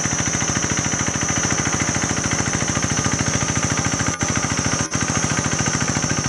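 Two-wheel walking tractor's single-cylinder engine running with a fast, even chugging as it drags a leveling board through a flooded rice paddy. The sound drops out briefly twice, about four and five seconds in.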